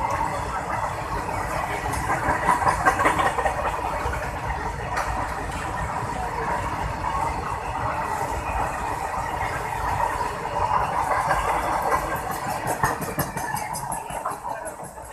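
Freight train of covered wagons passing close by at speed: a steady clatter of steel wheels on the rails and rattling wagon bodies, loudest about three seconds in. The tail of the train goes by near the end.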